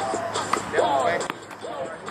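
Two sharp knocks of a tennis ball, struck by a racket and bouncing on a hard court, about half a second and about a second and a quarter in, over hip-hop music with a voice.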